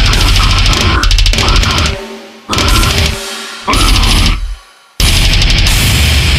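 Deathcore breakdown with heavily distorted guitars and drums. It turns stop-start, with two separate hits that ring out and fade, then another heavy track cuts in abruptly about five seconds in.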